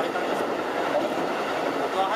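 Keikyu 2100 series electric train running steadily along the line, heard from inside the car: a constant rumble of the wheels on the rails.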